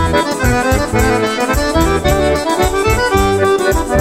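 Accordion playing a traditional Portuguese dance tune over a bass line and a steady, fast beat.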